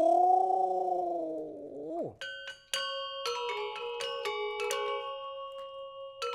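A voice holds one long note that bends up and then falls away about two seconds in. Then Balinese gender wayang metallophones start playing: bronze keys struck with mallets in quick, overlapping notes that ring on.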